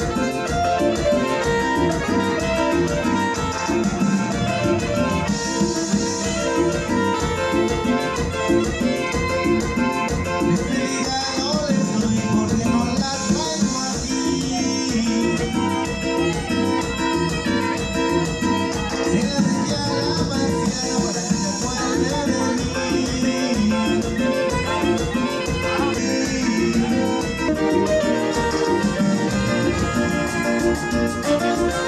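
Amplified band music with a steady dance beat, an instrumental passage without singing.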